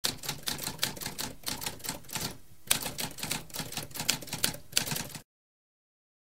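Typewriter keys typing in a quick run of clacking keystrokes. The typing breaks off briefly about halfway through and resumes with one louder strike, then cuts off about a second before the end.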